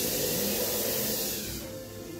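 A burst of loud hissing noise lasting about a second and a half, cutting off shortly before the end, over faint background music.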